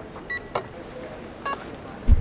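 Two short electronic beeps about a second apart, with a few light clicks between them, from an airport self check-in kiosk as it reads a passport and takes keypresses on its touchscreen.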